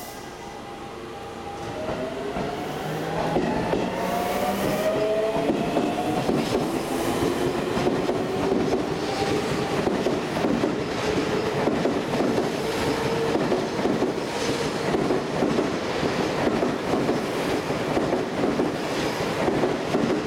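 Seibu 6000 series electric train pulling away from the platform. Several whining tones from the motors rise in pitch from about two seconds in, then the wheels clatter steadily over the rail joints as the cars pass, loud to the end.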